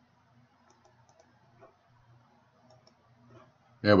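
Faint, scattered clicks of a computer mouse over a low room hum, a few seconds of near quiet while an image is loaded; a man's voice begins near the end.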